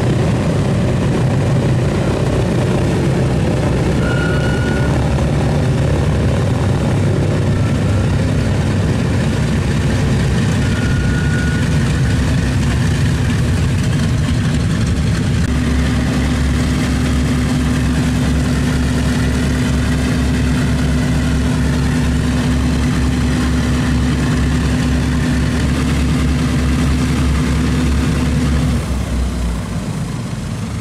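Boeing B-29 Superfortress's Wright R-3350 18-cylinder radial engines running at low power, propellers turning, in a steady heavy drone. From about halfway a steady low hum sits over the drone. Near the end the level drops abruptly.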